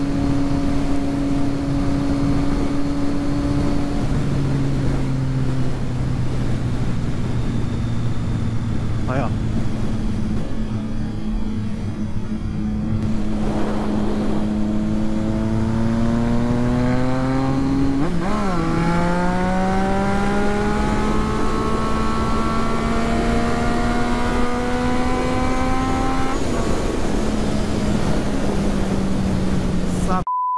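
Triumph Street Triple 675's inline three-cylinder engine running at highway speed, with wind noise. The engine note eases down slowly for the first half. After a brief blip past the middle it climbs steadily as the bike accelerates, then eases off near the end.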